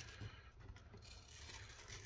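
Near silence with faint rustling and small ticks of masking tape being peeled off a plastic RC car body.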